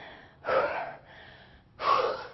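A woman breathing hard between burpee reps: two loud gasping breaths, about a second and a half apart. She is out of breath from the exertion.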